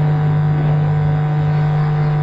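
A man humming one steady low note through closed lips into a handheld microphone: a playful, engine-like drone that goes with miming spoon-feeding someone.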